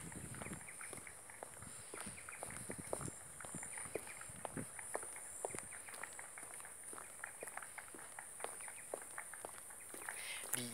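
Footsteps on a boardwalk: a run of faint, irregular light knocks and clicks, under a steady high-pitched buzz.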